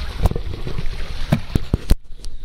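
Water splashing and lapping around a radio-controlled speed boat as it coasts in, with wind on the microphone and several sharp knocks in the second half.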